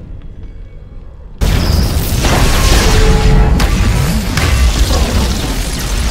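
Cinematic sound effects: a sudden loud boom about a second and a half in, then a heavy, sustained rumble with crackling over the film score, cutting off just after the end.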